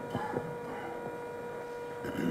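Faint, steady electrical hum from the hall's sound system over low room noise.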